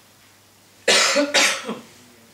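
A woman coughing twice in quick succession, about a second in, each cough sudden and loud.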